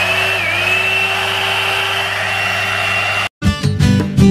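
One-step hot air brush (hair dryer and styler) running on its high setting: a steady fan rush with a whine, whose pitch dips briefly just after it comes on. It cuts off abruptly about three seconds in.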